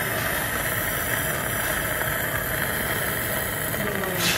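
Steady mechanical running noise of operating-room equipment, an even hum and hiss with no distinct events.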